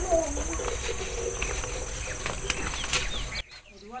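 A steady rushing noise with a faint hum under it that cuts off sharply near the end, with a few short bird chirps just before and after.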